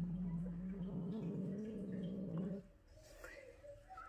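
Ginger cat growling low and steady around a feather toy held in its mouth, a possessive growl guarding the toy from its owner; the growl wavers slightly and breaks off about two and a half seconds in.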